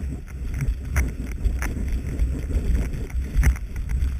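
Wind buffeting a knee-mounted action camera's microphone during a ski descent, over the hiss and scrape of skis running on snow, with a few sharp knocks scattered through.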